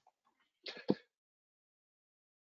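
Near silence in a pause of speech, broken just before the middle by a short faint intake of breath ending in a small click.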